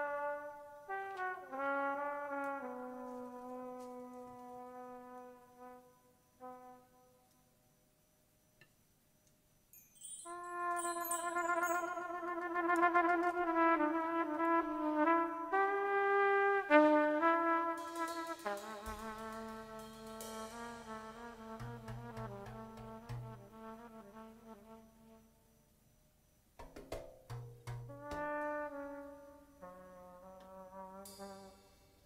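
Trumpet improvising a melody in phrases, with vibrato on the long held notes and a short pause about a quarter of the way through. Low notes join underneath about two-thirds of the way in.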